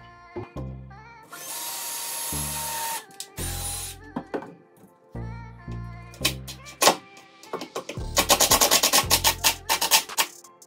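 Cordless drill driving screws through plywood to join two bookshelf units: a steady whir of a couple of seconds about a second in, a brief second run, and a rapid loud run of clicks near the end. Background music with a bass beat plays throughout.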